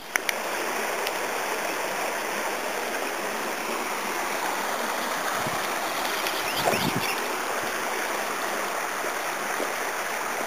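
Running water from a small stream: a steady, even rush of flowing water that comes in abruptly at the start.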